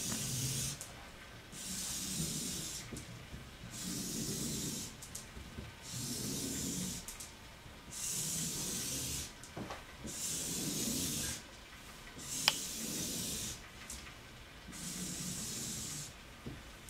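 Felt-tip marker drawn across paper on a wall: long scratchy strokes about a second each, roughly every two seconds, as the lines of a grid are ruled. A short tap about twelve seconds in.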